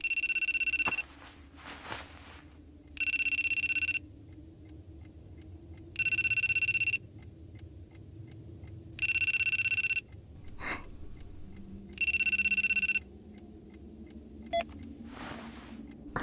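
Mobile phone ringing with a rapidly pulsing electronic ring: five rings of about a second each, three seconds apart, signalling an incoming call.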